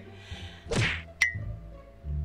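A falling whoosh followed about half a second later by a sharp click with a brief high ring, the kind of sound effects added in editing.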